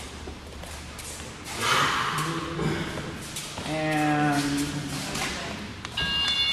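A man's voice calling out in a large gym hall, briefly and then in a longer drawn-out call about four seconds in, with scattered light thuds and taps in between.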